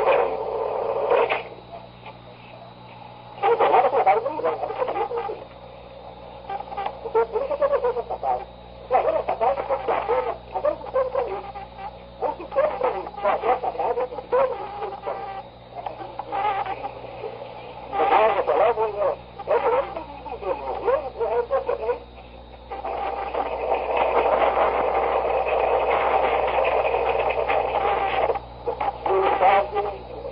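A man's voice speaking on an old, low-quality 1964 tape recording: muffled, band-limited and hard to make out, with pauses between phrases. A steady low electrical hum runs underneath.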